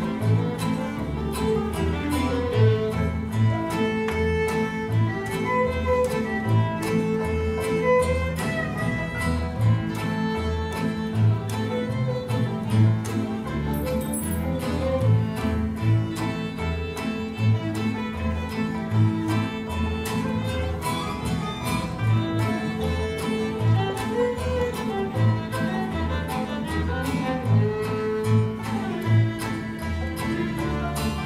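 A fiddle ensemble of many violins playing a fiddle tune together, with acoustic guitar and upright basses underneath keeping a steady, regular bass pulse.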